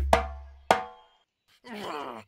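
Hand drum played with the palms: a deep boom rings out under two or three sharp strokes in the first second. Near the end comes a short sliding vocal groan.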